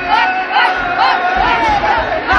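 A group of women singing and shouting together in loud, short, rising-and-falling calls, about two a second, over crowd noise.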